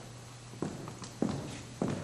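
Footsteps of one person walking away at an even pace, three steps about 0.6 s apart, over a low steady hum.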